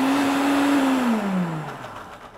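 Countertop blender pureeing a liquid herb and olive oil marinade, running at full speed with a steady motor hum, then spinning down with falling pitch over the last second.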